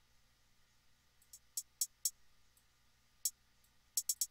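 A beat playing back at low level from a DAW. After about a second of near quiet, only sparse, short, high ticks like hi-hats come through, at uneven intervals.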